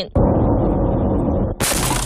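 A car striking a Formosan sambar deer, recorded from inside the car: a sudden loud crash that runs on as a heavy, muffled rumble for over a second, then gives way to a sharper, hissier noise near the end.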